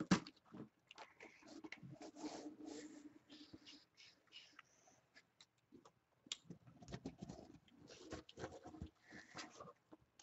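Cardboard mailer box being opened by hand: scattered scrapes, taps and rustles of cardboard, with a short drawn-out scraping sound about two seconds in and more handling clicks near the end.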